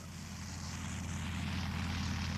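Early biplane's piston engine and propeller running steadily with a fast, even pulsing drone, growing slightly louder.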